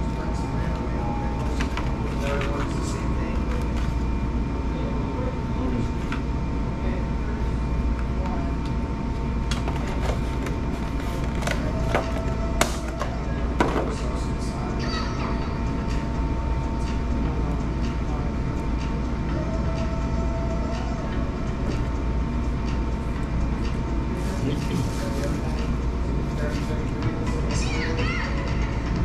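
Restaurant room background: a steady low hum with a few faint steady tones over it, faint voices, and a couple of sharp clicks about halfway through.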